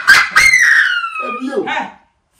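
A woman's loud, high-pitched shriek of laughter: one long squeal that slides down in pitch, after a quick spoken word.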